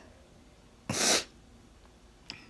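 A single short, sharp burst of breath noise from a person close to the microphone, lasting about a third of a second about a second in.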